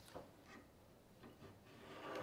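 Faint scratching of a knife scoring a plexiglass (acrylic) sheet along a clamped steel straightedge, a few light scrapes.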